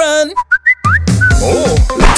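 Children's pop song: a held sung note ends, then a brief break with a few short, rising whistle-like notes. The backing track with a steady drum beat comes back in about a second in.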